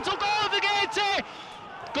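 A male football radio commentator's goal call: one long, high, held shout of "Goal" lasting just over a second as the equaliser goes in, then a short pause before he names the scorer.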